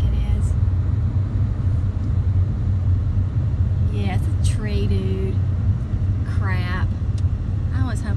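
Steady low road and engine rumble heard inside the cabin of a moving car.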